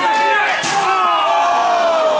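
A metal folding chair slammed down onto a wrestler: one sharp crash a little over half a second in, amid shouting spectators' voices.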